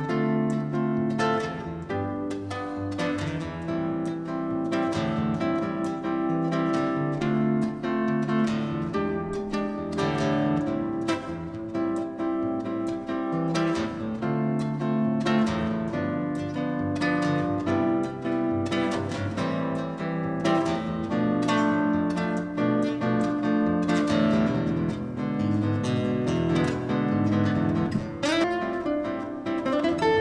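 Solo acoustic-electric guitar playing an instrumental piece, a steady run of quick plucked notes.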